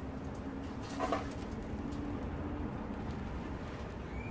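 A dove cooing in a low, drawn-out series of notes, with a short knock about a second in.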